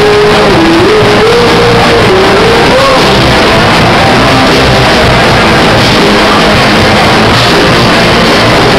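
Punk rock band playing live and very loud: distorted electric guitars, electric bass and drum kit in a dense, saturated wall of sound. A single wavering held note rides over the mix for the first three seconds or so.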